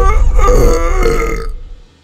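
A man belching long and loud, one drawn-out burp that lasts nearly two seconds and fades out near the end.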